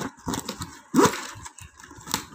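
Stiff plastic weaving tape rustling, clicking and scraping in irregular bursts as its strips are pulled and tucked through a woven tray, with a louder scrape about a second in.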